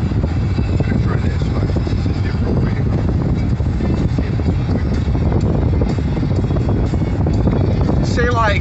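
Steady road and engine noise inside a car's cabin at highway speed, with music playing from the car stereo.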